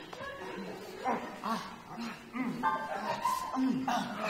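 Men's voices making a string of short wordless vocal sounds, each rising and falling in pitch, coming about twice a second from about a second in.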